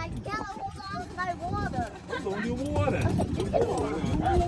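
Indistinct talking and chatter from people riding in an open cart, over the low rumble of the moving cart.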